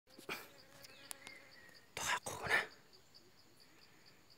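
Insects calling in a faint, fast, even pulse, with short bursts of rustling in dry grass and undergrowth, the loudest about two seconds in.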